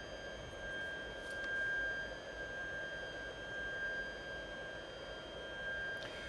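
Creality Ender 2 3D printer running as it homes its axes: a steady high-pitched whine with fainter overtones above it and a soft hum underneath, from its stepper motors and cooling fans.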